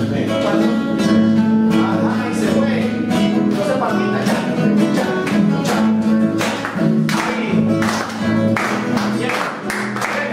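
Acoustic guitars strumming chords in a steady paseo accompaniment rhythm.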